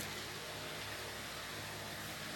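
Steady background hiss with a faint low hum, even throughout: room tone with no distinct event.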